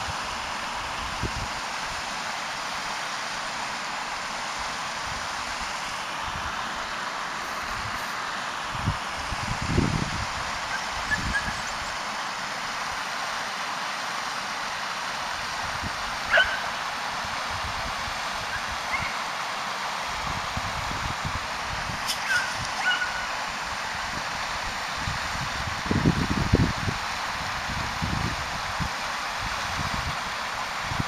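Beagle hounds giving tongue in a few short, distant cries over the steady rush of a rocky moorland stream. A couple of low buffets of wind hit the microphone, the loudest about ten seconds in and again near the end.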